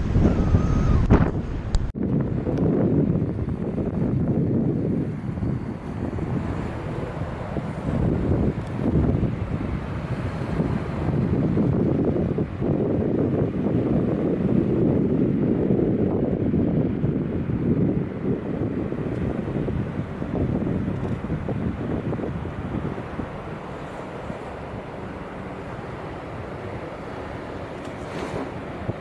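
Strong wind buffeting the microphone: a steady, gusting rush with no speech, easing a little over the last few seconds. A sudden cut about two seconds in.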